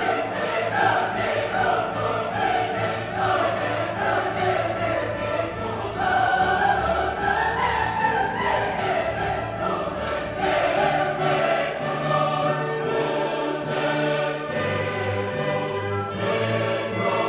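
Background music: a choir singing sustained lines in a classical style.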